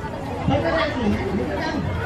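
Background chatter of people talking, with no clear words.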